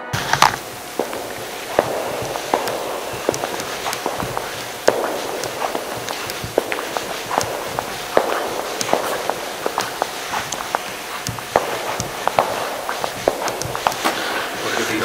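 Footsteps and scattered sharp clicks and knocks on a stone floor, echoing in a large church interior, over a steady background hiss.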